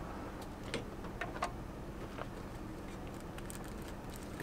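Faint, scattered clicks and light rustling as equipment is handled in an open metal storage drawer, over a steady low hum.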